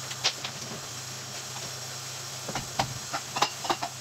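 Scattered light knocks and clicks from someone handling things at a kitchen pantry and its door, a single one early and a quick run of them in the last second and a half, over a steady hiss and low hum.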